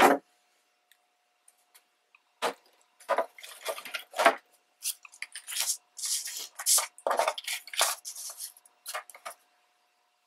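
Scrapbook paper strips and a plastic scoring board being handled, starting about two and a half seconds in: a string of short paper rustles and light knocks as the board is set in place and a strip is laid on it.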